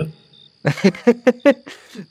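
Crickets chirping as a steady, unbroken high-pitched trill, the background ambience of a night scene.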